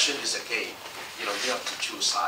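Only speech: a man talking at a lectern, in short phrases with brief pauses.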